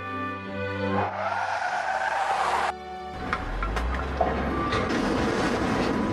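Background music, then a cartoon sound effect of cars driving up with tyres skidding to a stop. It is followed by engines rumbling low, with a few sharp clicks.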